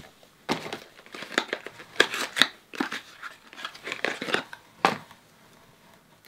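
Folded paper packaging rustling and crinkling as hands handle it, a run of irregular rustles that stops about a second before the end.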